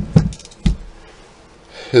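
Three short knocks and clicks in the first second from handling a small plastic USB LED light, then quiet until a man starts speaking near the end.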